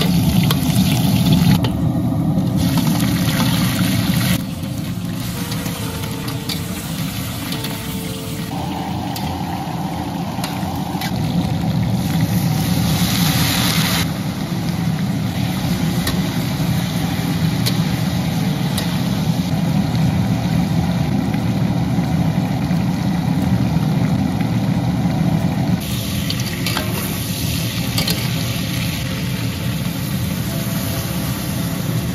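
Food frying and being stir-fried in hot oil in a large wok, ginger slices and then chunks of lamb, with a sizzle over a steady low rumble. The spatula scrapes and knocks against the pan now and then.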